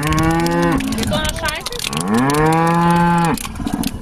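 Cow mooing twice: a short call, then a longer, drawn-out one about two seconds in.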